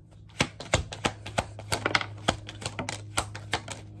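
A deck of tarot cards being shuffled overhand by hand: an irregular run of sharp card clicks and slaps, several a second.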